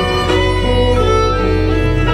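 Live blues band playing: a bowed fiddle carries the melody over electric guitars, drums and a held low bass note.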